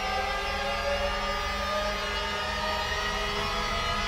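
A steady, sustained drone of several held tones over a low hum, even in level throughout.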